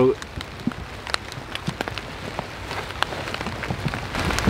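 Light, irregular pattering of scattered drops falling on dry fallen leaves, over a faint steady hiss.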